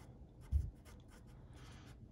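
Black felt-tip marker writing on paper in short, faint strokes, with a low thump about half a second in.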